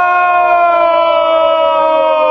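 A man's long, loud yell held on a single note that slowly sinks in pitch, with no words in it.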